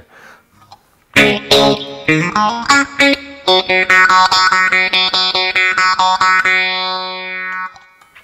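Electric guitar played through the NUX Mighty Air's clean Twin Verb amp model. A short run of plucked single notes starts about a second in, then a chord rings for several seconds and is cut off shortly before the end.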